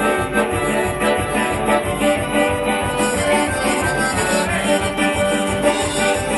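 Live folk band playing an instrumental passage: button accordion with a hurdy-gurdy's drones, over a fast, even beat in the low end.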